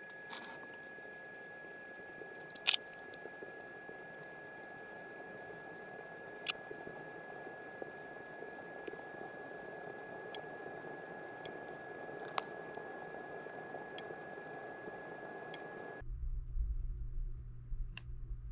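Freshly lit paper-and-pine-kindling fire burning in a wood stove with its door cracked open: a soft steady rush with faint crackling and three sharper pops spread a few seconds apart. A thin steady high whine sits underneath, and near the end the sound gives way to a low hum.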